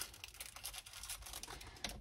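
Faint rustling and light, scattered clicks of small plastic bags of diamond-painting drills being handled.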